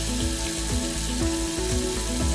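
A steady stream of tap water running from a faucet into a ceramic vessel sink, a continuous hiss. Background music with a beat about twice a second plays under it.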